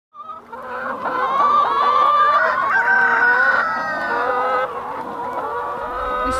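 A flock of chickens calling, with many drawn-out calls overlapping.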